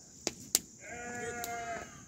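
A young sheep or goat bleating once, a fairly faint call about a second long, held nearly level in pitch. It is preceded by two sharp clicks within the first half-second.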